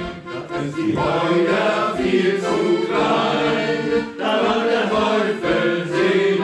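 Piano accordion playing a German sea-shanty melody in sustained chords, with a men's shanty choir singing along.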